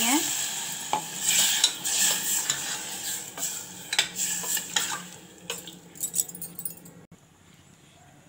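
Steel ladle stirring potatoes and masala gravy in a steel pressure-cooker pot, scraping and clinking against the sides over a hiss of sizzling. The stirring and sizzle die away about five seconds in.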